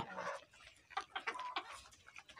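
A flock of Egyptian Fayoumi chickens clucking softly: short, scattered calls, with one brief higher note about one and a half seconds in.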